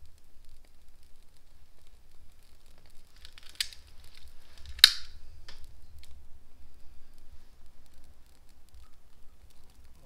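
Trigger of a long-nosed butane utility lighter clicking as it is fired to light dried rosemary sprigs: a short click with a brief hiss about three and a half seconds in, then a sharper, louder click just before five seconds. A faint low hum runs underneath.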